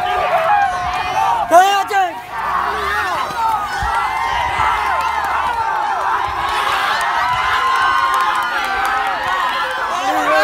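Crowd of players and onlookers shouting and cheering on a tug-of-war, many voices overlapping, with one loud shout about a second and a half in.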